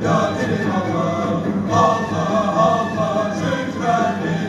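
A group of men singing a Sufi devotional chant together, with long held, wavering notes.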